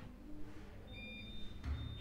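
A quiet pause with low steady background tone and a few brief, faint high thin tones about a second in.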